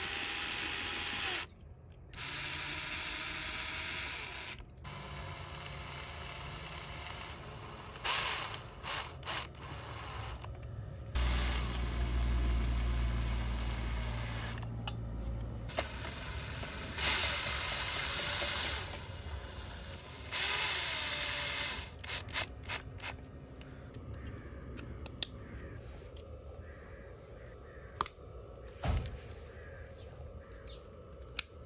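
Cordless drill-driver running in repeated bursts of a few seconds, with a thin high whine, driving screws into the terminals of an electric motor controller. Near the end it gives way to a few sharp clicks of parts being handled.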